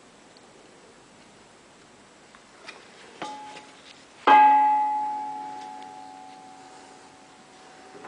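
A metal part of an idle packaging machine is knocked, with a light tap just before, then one sharp strike about four seconds in. The strike rings on with a bell-like tone that fades slowly over about three seconds.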